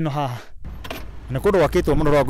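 A man talking, with a short pause in the middle broken by a brief faint high clink.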